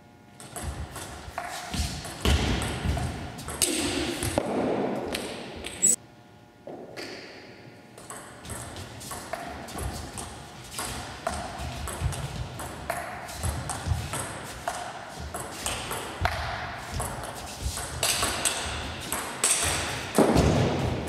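Table tennis ball clicking off rackets and bouncing on the table through several rallies, with a short lull about six seconds in.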